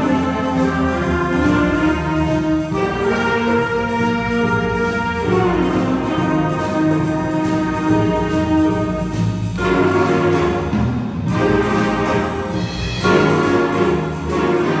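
School jazz big band playing: saxophones and brass in sustained chords over piano, upright bass and drum kit, with a cymbal keeping a steady beat. The horn chords break off briefly twice near the end.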